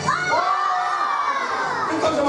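A group of children shouting together in one long, drawn-out yell that rises at the start and slowly falls away.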